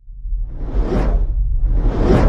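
Cinematic whoosh sound effects of an animated film title: two swelling whooshes about a second apart, over a deep rumble that grows louder.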